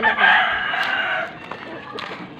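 A rooster crowing once, a hoarse call of a little over a second that fades out.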